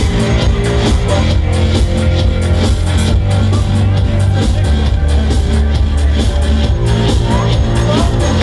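Loud electronic dance music from a live DJ set, with a steady beat and heavy bass.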